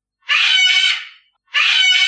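A parrot squawking: two harsh calls, each about a second long, the second starting about a second and a half in.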